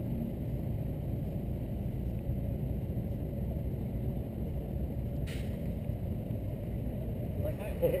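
A steady low rumble of outdoor urban background, like motor traffic, with a short laugh near the end.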